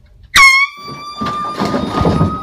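A sudden, very loud air-horn blast about a third of a second in: one held tone that sags in pitch at the start, then holds steady. A jumble of commotion noise rises beneath it in the second half.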